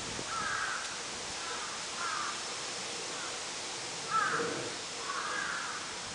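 Crows cawing: about five short, harsh caws spread across a few seconds, the loudest about four seconds in, over a steady outdoor hiss.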